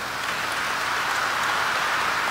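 Congregation applauding in a large church, the applause swelling in the first half second and then holding steady.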